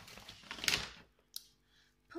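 Rustling and clicking of items being handled, with one sharper knock a little under a second in; it dies away about a second in, leaving one faint click.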